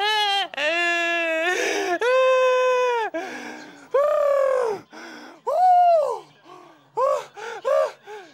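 A man's high-pitched, wordless cries of excitement, cheering on a sprint: a run of long drawn-out yells with gasps between them, then shorter quick cries near the end.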